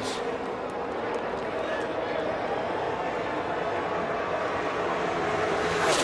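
A pack of V8 NASCAR stock cars at full throttle in a tight draft, a steady massed engine drone with a faint held tone in it, as heard on a TV broadcast.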